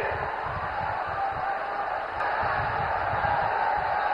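Steady murmur of a large rally crowd: a low, even background of many voices and general noise, with no single sound standing out.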